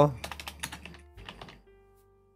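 Computer keyboard being typed on: a quick run of keystrokes over the first second and a half, then the typing stops.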